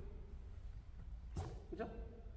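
A badminton racket swung once through the air in a practice backhand overhead swing, a single brief swish about a second and a half in.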